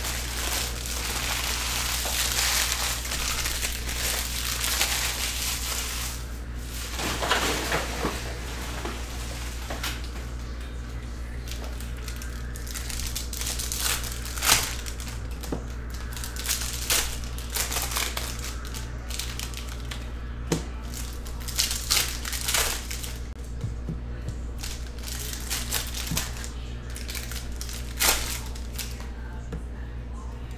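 Trading-card packs being opened and handled: foil pack wrappers crinkling, densest over the first few seconds, then cards being flicked through and squared up in a stack, with sharp clicks every second or two.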